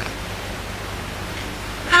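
Steady hiss of the recording's background noise, with a faint low hum under it, in a gap between narrated lines.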